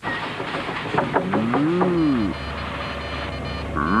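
Cartoon machine sound effects: a quick run of clicks about a second in, then tones that rise and fall in pitch, and a steady low hum from about halfway.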